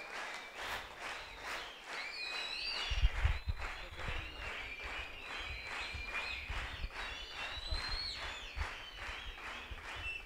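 Audience clapping steadily in rhythm, with high wavering cries rising and falling above the clapping. There are low thumps from about three seconds in.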